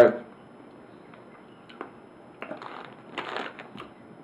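A clear plastic bag of durian candies being handled, giving a few faint clicks and a soft crinkle about two and a half to three and a half seconds in, amid a mostly quiet stretch.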